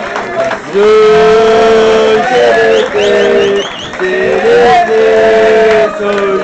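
A group of celebrating people singing a chant together in unison, loud, with long held notes that bend slightly in pitch, in three phrases.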